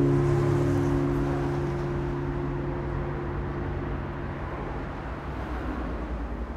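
The final guitar chord of an indie rock song ringing out and slowly dying away over a low rumble and hiss.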